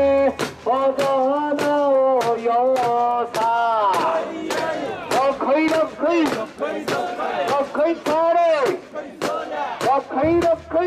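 Group of mikoshi bearers chanting in unison as they carry the portable shrine: long held calls at first, then shorter rising-and-falling shouts. A regular sharp clack about twice a second runs in time with the chanting.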